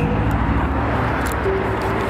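Low, steady rumble on a handheld camera microphone as it is moved about, with a brief hummed voice sound near the end.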